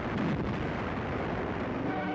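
Battle sound effects under the narration: an even, steady rumble of distant gunfire and explosions, with no single distinct blast.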